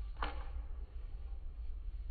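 A single short, light click from wooden drumsticks being handled and twirled, over a steady low hum.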